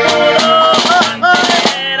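Norteño band playing live: a button accordion carries the melody over strummed guitar and snare drum, with a quick snare roll about halfway through.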